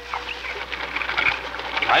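Radio-drama sound effect of a rushing river, a steady noisy wash of water. A voice begins right at the end.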